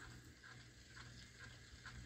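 Near silence: room tone with a faint steady low hum and a few faint ticks.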